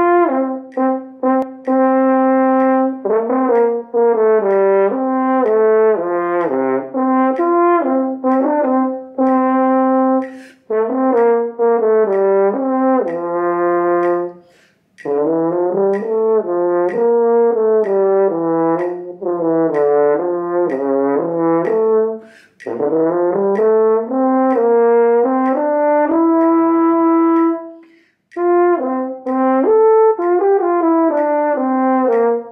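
French horn playing a slow, lyrical etude in legato phrases of sustained notes, with short breath pauses between phrases. A metronome ticks faintly along underneath.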